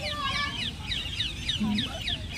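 Birds chirping, a quick string of short, high calls repeated several times a second.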